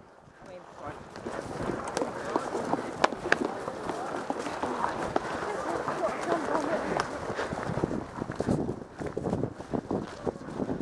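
A horse ridden at pace along a brushy woodland track: hoofbeats and rustling undergrowth, with a few sharp clicks and indistinct voices.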